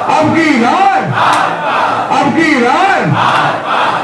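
A crowd of men shouting a short protest slogan in unison, over and over, with raised voices repeating about once a second.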